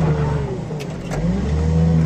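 Car crusher's engine running, its note sagging about half a second in and then revving back up after about a second.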